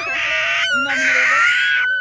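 A small child's high, noisy squeals in two stretches, the second one longer, cutting off just before the end.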